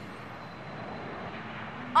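Steady jet aircraft engine noise.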